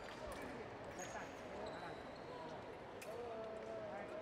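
Hall ambience of indistinct voices at a fencing competition, with a few sharp footfalls and knocks from fencers stepping on the piste.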